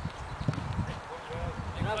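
Football players shouting to each other during a game, the voices growing louder near the end, over a low rumble and scattered thuds with one sharp knock about half a second in.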